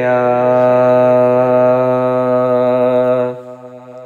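Male voice singing a naat, holding one long steady note at the end of a line. About three seconds in the voice drops away, leaving a much quieter steady drone at the same pitch.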